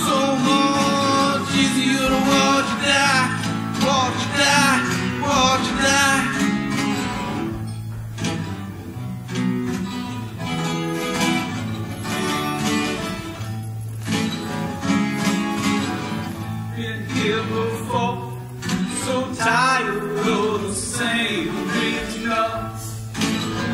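Live song on a strummed acoustic guitar, with a wavering melody line carried over it. The playing thins out briefly at about eight and again at about fourteen seconds.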